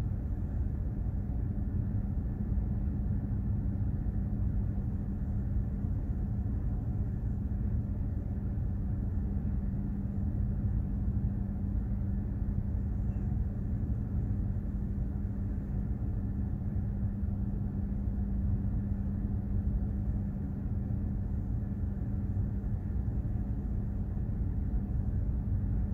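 Container ship's machinery under way: a steady low rumble with a constant hum underneath, unchanging throughout.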